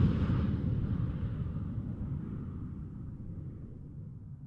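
The fading tail of a whoosh sound effect in an animated logo outro: a low, noisy rumble with no clear pitch that dies away steadily.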